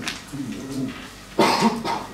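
A person coughing: a sudden loud cough about one and a half seconds in, after some low murmured talk.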